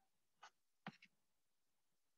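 Near silence with a few short, faint clicks: one about half a second in, and a sharper pair just before and at one second.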